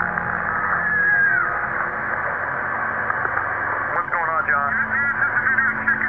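Screaming heard through heavy hiss in low-quality, narrow-band recording audio, with a falling wail about a second in and wavering cries that come through more clearly from about four seconds in.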